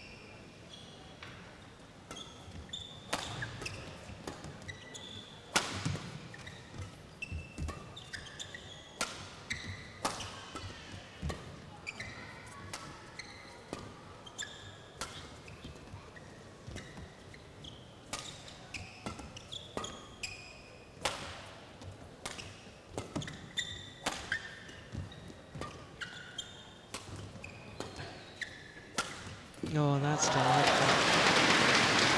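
A long badminton rally: rackets strike the shuttlecock about once a second, with short high squeaks of court shoes between the shots. Crowd applause breaks out right at the end as the rally finishes.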